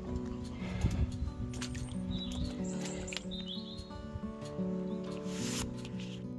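Background music with held notes, over footsteps on a wet gravel track. A bird chirps twice in the middle.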